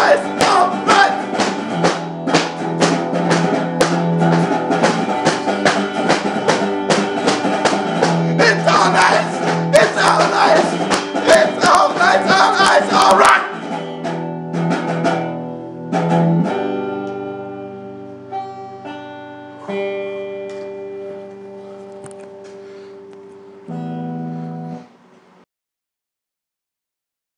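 Band ending a song: guitar and drums play on until about halfway through, then the drums stop and sustained guitar chords ring out and fade. A last chord is struck near the end and cut off.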